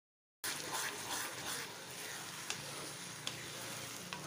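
Onion and tomato mixture sizzling in a pan while a wooden spatula stirs it, with a few light taps of the spatula against the pan. It starts after a brief moment of dead silence.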